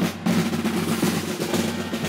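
Snare drums playing continuous rolls over a bass drum, the kind of drumming that accompanies a street procession, with a brief break about every two seconds.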